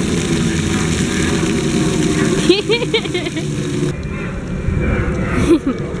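Splash-pad ground fountain jet spraying water, a steady loud rush of water that stops abruptly about four seconds in. After that, wind rumbles on the microphone.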